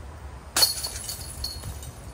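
Disc golf disc striking the chains of a DISCatcher basket: a sharp hit about half a second in, followed by the chains jingling and settling for about a second.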